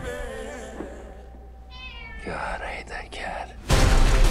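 A cat meowing in a film soundtrack, in a pause in the music. Loud music cuts back in just before the end.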